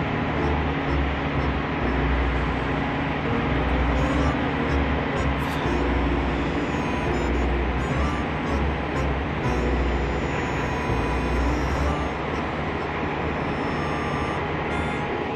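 Steady outdoor background noise with wind buffeting the microphone in uneven low gusts.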